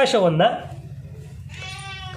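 A person's voice: a brief stretch of speech, then a long drawn-out vowel held on one pitch near the end.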